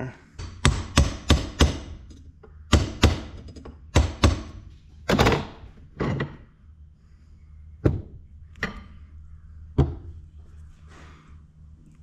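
Irregular sharp knocks and clacks of metal parts being worked off a combine swing-auger hydraulic cylinder rod on a workbench. There is a quick run of knocks in the first couple of seconds, a few more up to about halfway, then a handful of single knocks spaced out.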